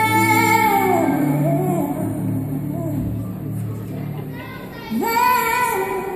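Female lead vocalist singing a soul ballad live with a band. A long held high note ends about half a second in with a sliding run downward, the band's sustained chords carry a softer stretch, and a new sung phrase starts about five seconds in.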